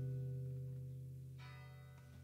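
A low guitar note left ringing with a bell-like sustain and slowly fading, then a softer, higher note plucked about one and a half seconds in.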